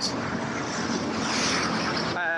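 Road traffic on a busy city avenue: a steady noise of passing cars, slightly louder just past the middle.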